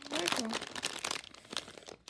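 Plastic blind-bag packaging crinkling as it is handled in the hand, a rapid run of irregular crackles.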